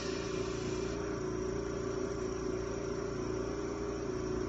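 Power washer running steadily, a constant mechanical hum and drone with no breaks.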